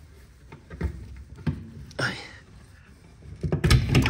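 Hand-worked latch of an aluminium-framed cargo box: scattered clicks and knocks, then a louder cluster of knocks and clatter near the end as the box comes open.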